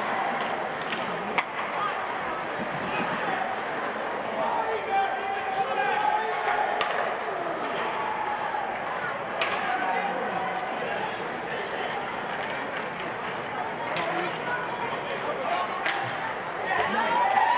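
Ice hockey game sound in a rink: a steady murmur of spectator voices, broken a few times by sharp knocks of sticks and puck on the ice and boards.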